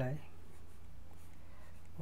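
Faint scratching of a stylus writing on a tablet surface, over a steady low hum.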